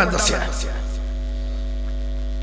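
Steady electrical mains hum picked up by the microphone system, with a man's speech ending about half a second in.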